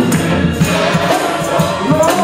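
Men's gospel choir and lead singer singing with keyboard accompaniment, with hand-clapping on a steady beat.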